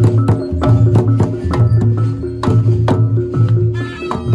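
Reog Ponorogo gamelan accompaniment: drums and struck percussion in a steady repeating rhythm over sustained gong-like tones.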